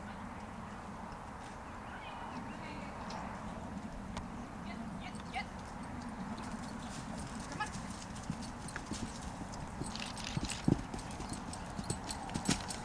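Hoofbeats of a loose horse running on soft dirt arena footing, faint at first and growing louder and sharper as it comes close near the end, with one heavier thud a little before the end.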